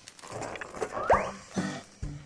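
Comic cartoon sound effect of a character heaving and retching up a whole cake he had swallowed, a throaty animal-like gag with a quick rising swoop about a second in, over background music.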